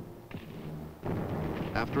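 Small-arms gunfire from an infantry patrol: a rapid run of shots with a rumbling echo starting about a second in, as on an old newsreel soundtrack.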